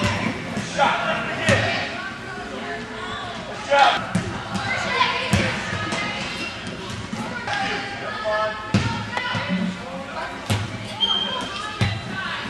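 Futsal ball being kicked and bouncing on a hard indoor court, a string of irregular sharp knocks, over the shouts and chatter of players and spectators.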